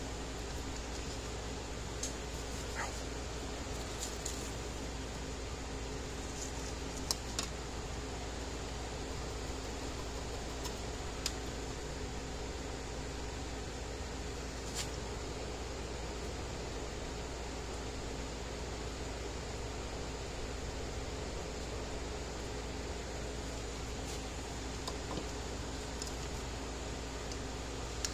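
A steady fan-like hum in the workshop, with a few faint small clicks and taps from handling a circuit board and soldering iron.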